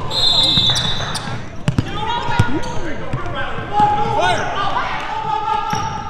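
A basketball dribbled on a hardwood gym floor, heard as a few sharp thuds, against indistinct voices of players and spectators.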